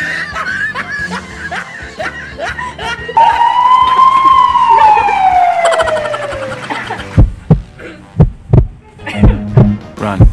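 Laughter, then a long single tone that rises slightly and then slides slowly downward, followed near the end by a heartbeat sound effect: loud low thumps in pairs.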